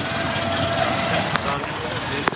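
Steady wind blowing against the microphone outdoors, a continuous rushing noise, with a small click about a second and a half in.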